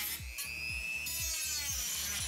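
Dremel rotary tool running at high speed with a high-pitched whine as it cuts away part of a laptop's internal chassis frame.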